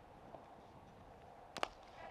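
Faint open-ground ambience, then about one and a half seconds in a single short, sharp knock of a cricket bat striking the ball.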